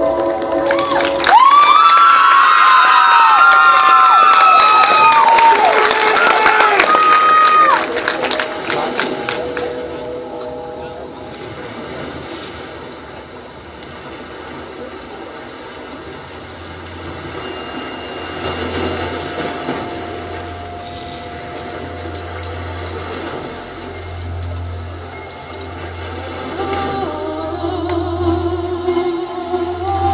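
Marching band opening its show: a loud brass entrance with notes that swoop upward over crashing percussion for several seconds, then a much quieter passage of held tones over a low bass hum that builds again near the end.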